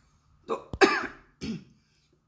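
A woman coughs once, short and harsh, about a second in, just after a spoken word. She has COVID-19, and she says the cough came on only the day before.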